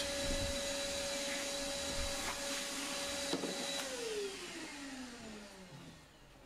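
Shop vacuum running steadily with a constant whine as its hose sucks up sawdust, then switched off about four seconds in, its motor whine falling in pitch as it spins down.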